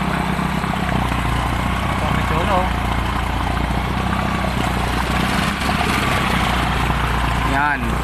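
Motorcycle engine running steadily at low speed as it wades through floodwater, with the water sloshing and splashing around it. The flood has covered the exhaust pipes and is close to reaching the spark plug.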